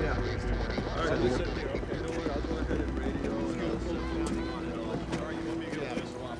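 Indistinct background chatter of several people talking at once, over a low rumble.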